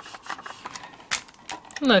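Faint, scattered light clicks and taps of a stamp and a clear stamping platform being handled while a stamp is pressed down onto card, with the platform lid being lifted near the end.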